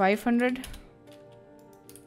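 Computer keyboard keys clicking a few times as a number is typed, under quiet background music.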